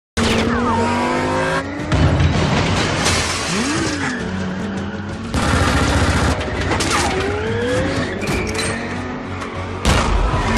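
Action-film soundtrack: a car engine revving and tyres squealing, with glass shattering, mixed over a dramatic music score. Sudden loud hits come about two seconds in and again around the middle.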